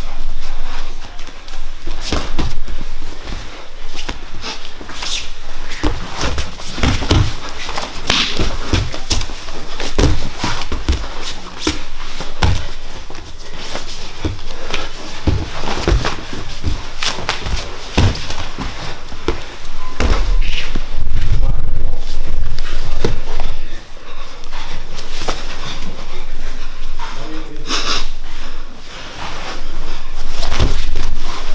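No-gi jiu-jitsu sparring on foam mats: irregular thumps and slaps of bodies, hands and feet hitting and sliding on the mat as two grapplers scramble, loudest about two-thirds of the way through.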